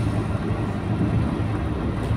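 A car's steady low road and engine rumble, heard from inside the car as it drives along.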